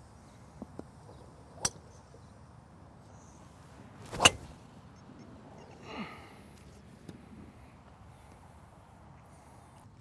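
A TaylorMade SIM driver striking a golf ball off the tee on a full swing: one sharp, loud crack a little over four seconds in. A fainter click comes earlier, during the setup.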